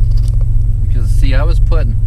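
Turbo Buick Regal's turbocharged V6 running, heard from inside the cabin as a steady low drone.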